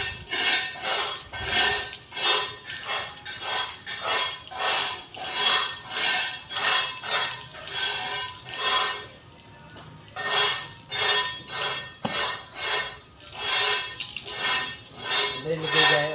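Rhythmic swishing and rattling of water in a plastic bottle being shaken and filled from a garden hose, about two strokes a second, with a brief lull about nine seconds in.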